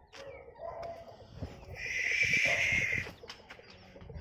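Birds calling: low cooing early on, then a loud harsh screech lasting about a second.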